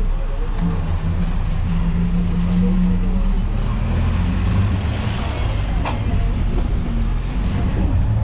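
Engine of a moving road vehicle running at low speed through city traffic, heard from on board as a steady low hum over road and traffic noise. There is a brief sharp sound about six seconds in.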